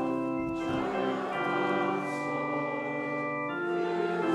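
Organ playing the hymn tune in held chords, the chord changing about half a second in and again near the end.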